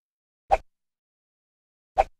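Two short pop sound effects, about a second and a half apart, of the kind used with animated on-screen text in a video outro.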